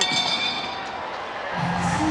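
Ring bell struck, ringing and fading over about a second: the bell ending the round. Music comes in about a second and a half in, over crowd noise.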